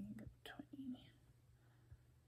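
A woman's soft whispered murmur in the first second, with a couple of light stylus taps on a tablet's glass screen.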